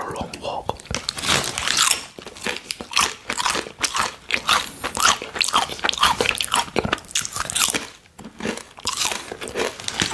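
Close-miked crunching and chewing of crisp fried plantain chips, one bite and crunch after another, with a short lull about eight seconds in.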